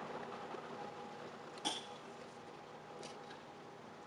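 French press plunger being pushed slowly down through lavender-infused oil. It is mostly quiet, with one soft click about a second and a half in.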